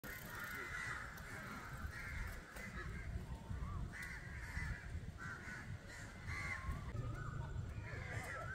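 Harsh bird calls, each about half a second long, repeated every second or so over a low background rumble.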